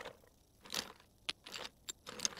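Toy building blocks clicking and knocking as they are taken out of a toy truck and set down on the floor: a handful of short, light knocks.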